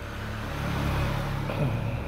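Low engine rumble that swells about a second in and then eases off, like a motor vehicle running or passing close by.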